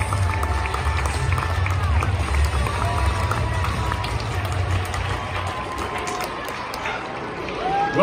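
Stadium crowd cheering and shouting, with music over the public-address system whose deep bass stops about five and a half seconds in.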